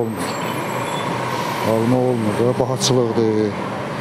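Road traffic on a city street, with a sudden hiss about a quarter second in that fades away over the next second or so. A voice speaks through the middle of the stretch.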